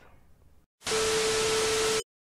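TV-static transition sound effect: a loud, even hiss of static with a steady beep tone underneath, starting about a second in after a moment of faint room tone and cutting off suddenly.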